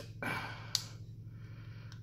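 Quiet handling of an airsoft pistol's slide and two-part guide rod in the hands, with one small sharp click a little under a second in and a fainter tick near the end, over a low steady hum.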